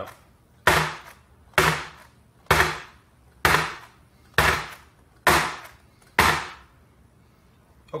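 A baking sheet of piped macaron batter dropped flat onto a countertop seven times, about once a second, each a sharp bang with a short ringing tail: the tray is rapped to knock air bubbles out of the batter.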